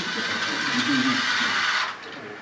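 Small wheeled robot's electric drive motors running as it drives across carpet, a steady whirring hiss with a faint whine, which cuts off suddenly near the end as the robot stops.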